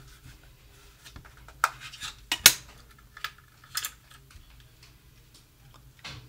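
Plastic clicks and small rattles from a SadoTech RingPoint driveway-alert receiver as its battery cover is opened and the batteries are pulled out: a handful of sharp clicks, the loudest about two and a half seconds in.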